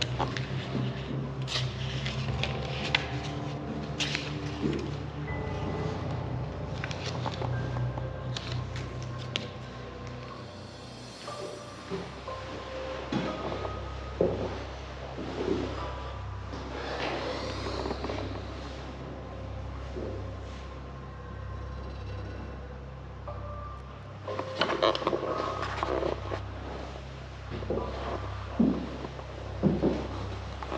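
Background music with long held low notes and sustained tones, with scattered light clicks over it.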